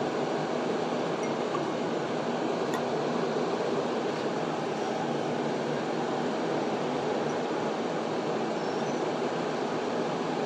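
Magnetic stirrer running steadily at high speed, spinning the stir bar in a beaker of solution: a constant mechanical hum that does not change.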